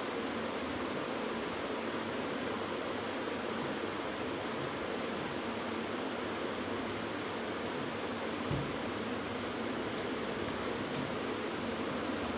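Steady, even hiss of background room noise, with one brief low thump about eight and a half seconds in.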